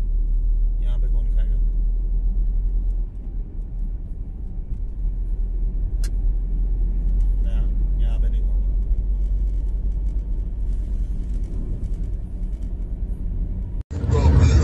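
Steady low rumble of road and engine noise heard from inside a car's cabin while cruising on an expressway.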